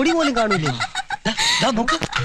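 Men's voices making repeated, wavering hen-like clucking calls.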